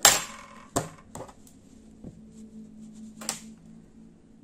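Handling noise of a knitted hat being turned over and adjusted by hand on a tabletop: a sharp knock right at the start, the loudest sound, then a few lighter clicks and taps, one near the end, over a faint low hum.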